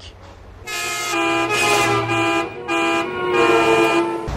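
A vehicle horn sounding a short tune of about five held notes at different pitches with brief breaks between them, starting just under a second in. It is a horn jingle used as a transition sting.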